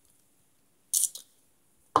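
Two brief mouth or breath sounds from a person tasting a drink: a short hissing breath about a second in, then a short, lower mouth noise just before the end, with near silence otherwise.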